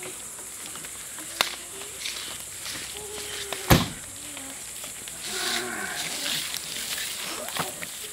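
Faint, short voiced sounds from a person, brief hums and murmurs rather than clear words, with a sharp click about three and a half seconds in.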